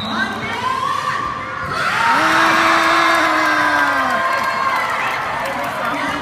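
Crowd of children and adults cheering and shouting at a penalty kick, swelling loudly about two seconds in and dying down after about four seconds, with one voice holding a long shout.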